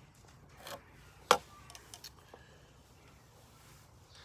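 Quiet handling of a pencil and a metal combination square on a hardwood block: a short pencil scrape, then one sharp click about a second in, followed by a few faint ticks.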